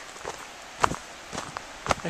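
Footsteps on a paved path, four steps about half a second apart at a walking pace.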